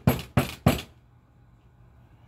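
Three loud, sharp knocks on a panelled door, about a third of a second apart, each dying away quickly.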